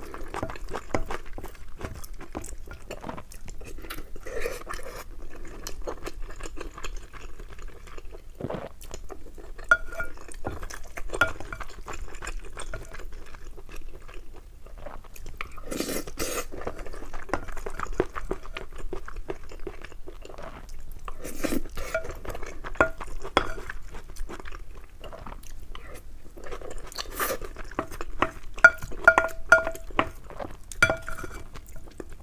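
Close-miked chewing of mutton curry and rice, with a wooden spoon scraping and knocking against a glass bowl as food is scooped. Short ringing clinks from the bowl come mostly in the last few seconds.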